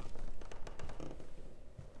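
Footsteps of people walking indoors, with a quick run of taps and clicks in the first second that thins out toward the end.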